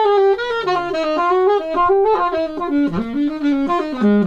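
Alto saxophone playing an unaccompanied line of quick, changing notes during a soundcheck.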